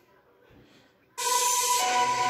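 Near silence, then about a second in, a recorded video's soundtrack starts suddenly from laptop speakers: background music with steady held tones under a strong hiss.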